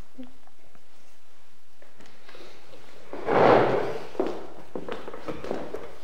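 Footsteps on a wooden floor and a padded piano bench being handled as a man sits down at a grand piano. A brief, louder scrape or thump comes about three seconds in, then a few light knocks.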